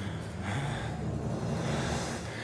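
Low, steady drone of dramatic background score, with faint breaths over it.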